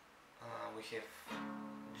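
Acoustic guitar chord strummed once, a little over a second in, then left ringing and slowly fading.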